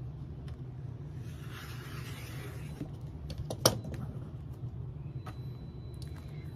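Rotary cutter blade rolling along the edge of an acrylic quilting ruler, slicing through cotton fabric on a cutting mat: one soft rasping cut lasting about a second and a half. A sharp click follows about midway, then a few light taps, over a steady low hum.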